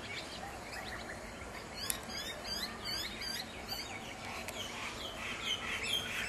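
Birds calling: a quick run of high, repeated chirps, about three a second, starting about two seconds in and lasting about two seconds, with more calls near the end.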